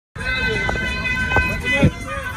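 Logo intro sting: held high synthesized tones over three deep hits, with a voice-like sound woven in.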